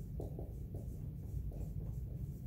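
Dry-erase marker writing on a whiteboard: a run of short squeaky strokes as a line of text is written, over a steady low hum.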